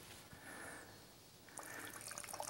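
Faint trickle of brown rice vinegar poured from a plastic bottle into a small measuring cup.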